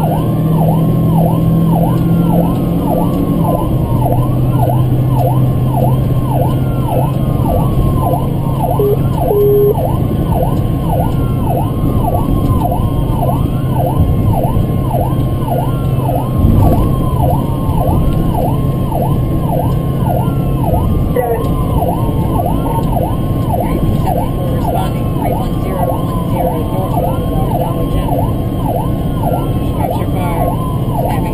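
Emergency-vehicle siren on a fast yelp, sweeping up and down about one and a half times a second, heard from inside a paramedic vehicle's cabin. A second, higher siren falls in pitch about every three seconds, over a steady low engine and road drone, with a short double horn-like blip about nine seconds in.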